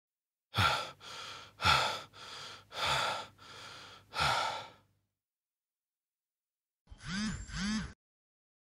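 A man breathing hard: four heavy, gasping breaths about a second apart, each sharp at the start and trailing off. After a pause, two short sounds near the end rise and fall in pitch.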